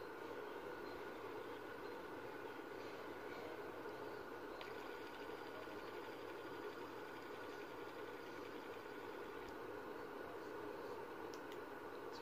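Faint steady hiss, with a faint high whir from a spinning metal fidget spinner's bearing starting about four and a half seconds in.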